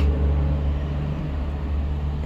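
Steady low rumble of motor-vehicle traffic or an idling engine, an unbroken hum with no voice over it.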